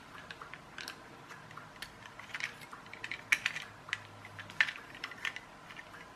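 Light, irregular plastic clicks and taps as a small toy car's plastic chassis, front axle and circuit board are handled. The sharpest clicks come a little past the middle.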